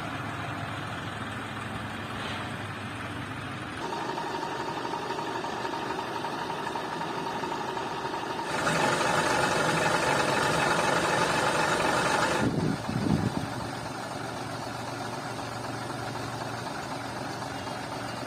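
Heavy goods truck's diesel engine idling steadily, louder for a few seconds in the middle, followed by a couple of brief thumps.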